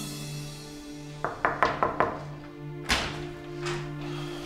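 Sustained dramatic background music, with a quick run of knocks on a wooden door a little over a second in and two more single thuds near the end.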